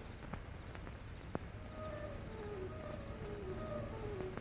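Quiet film score: from about halfway in, a soft figure of short notes alternating between a higher and a lower pitch. It plays over the steady hiss and hum of an old optical soundtrack, with a couple of faint clicks.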